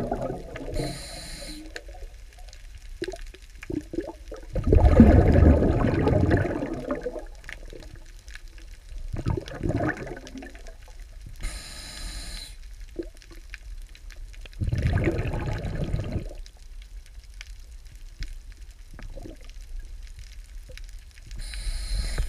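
Water noise picked up by an underwater camera: four loud, low bursts of bubbling or sloshing, about five seconds apart, with quieter water hiss between them.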